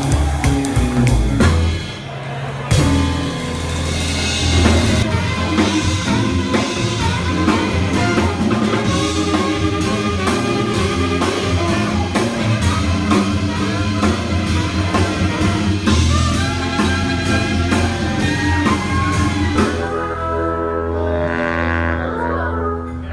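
Swing band music: brass and saxophone over a drum kit and steady bass line. There is a brief drop about two seconds in and a held chord near the end.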